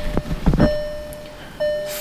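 Electronic warning chime of a 2017 VW Golf SportWagen, sounding after the ignition key is switched on: a steady beep repeating in pulses under a second long, with a couple of short clicks in the first half second.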